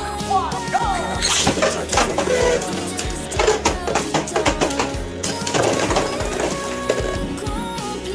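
Background music over two Beyblade spinning tops clashing in a clear plastic stadium: irregular sharp clacks as the tops strike each other and the stadium wall.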